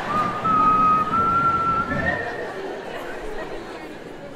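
Audience whistling during a stand-up comedy show: one long, slightly rising whistle followed by a short higher one about two seconds in. Crowd chatter sits underneath and dies down by the end.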